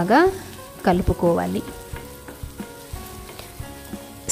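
A wooden spatula stirs and scrapes onions and spice powder frying in oil in a nonstick kadai, with faint clicks and a light sizzle. A woman's voice speaks briefly at the start and again about a second in.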